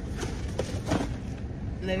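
Steady low rumble of a car interior, with a few brief knocks and rustles from a gift box and bag being handled about half a second and a second in.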